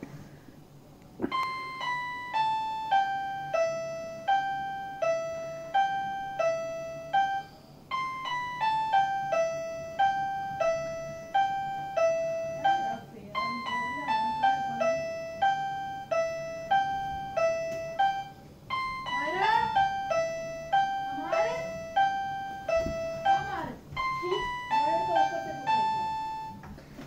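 Pink toy electronic keyboard played one note at a time: a simple melody in short stepping-down phrases, about two to three notes a second, repeated several times. It starts about a second in.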